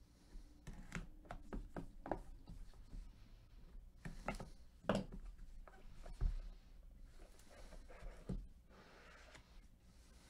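A cardboard trading-card hobby box being opened by gloved hands: a blade slitting the seal sticker, then scattered light taps, scrapes and rubbing as the box is turned and its lid slid off. The loudest knocks come about four to five seconds in and just after six seconds.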